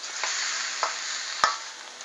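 Sausage and onions sizzling in a wok as a metal spatula stirs them, with a steady hiss and three sharp scrapes and taps of the spatula on the pan, the loudest about a second and a half in.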